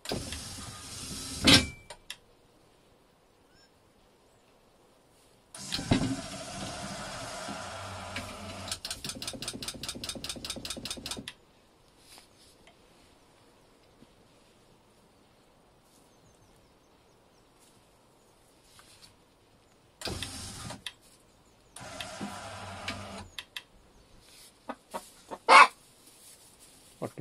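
A small electric motor, the DC motor of a DIY automatic chicken coop door, runs in separate spells with a low hum. The longest spell lasts about six seconds and turns into a fast, even rattle in its second half. Two short runs follow later, and sharp clicks come near the end.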